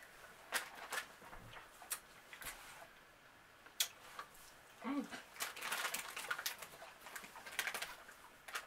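Crinkling and crackling of a small plastic Warheads candy wrapper being handled and opened: scattered single crackles at first, then a denser run of crackles over the last few seconds. A brief hummed vocal sound comes about five seconds in.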